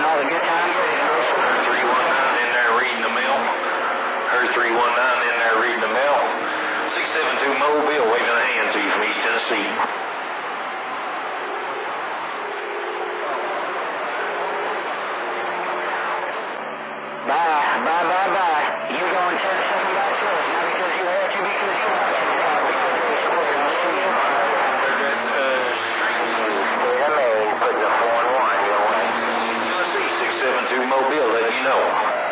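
CB radio receiver on channel 28 picking up distant skip stations: voices over the speaker, too garbled by the long-distance signal to make out. The signal fades weaker partway through, then comes back strong suddenly a little past the middle.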